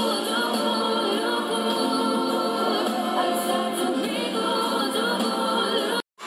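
Excerpt of a Eurovision song entry, with prominent layered singing voices over the backing music. It cuts off abruptly at the end.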